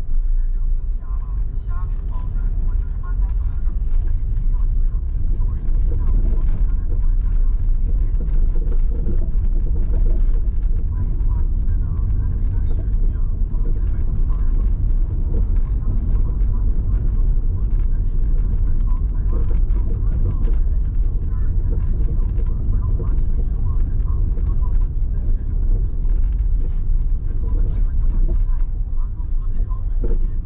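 Car moving through city streets, heard from inside: a steady low rumble of tyre and road noise with the engine underneath.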